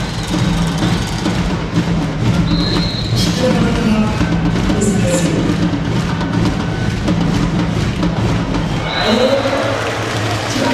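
Indoor sports-arena atmosphere between rallies: music and drumming over crowd noise. A short, high whistle sounds twice, about two and a half seconds in and again near the end.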